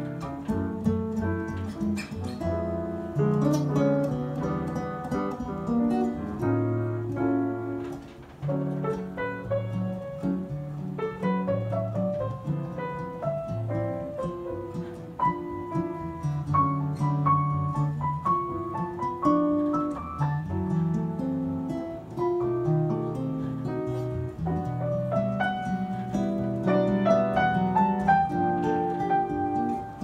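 Grand piano and acoustic guitar playing a live jazz duet, with the piano's notes and chords over plucked guitar accompaniment, without vocals.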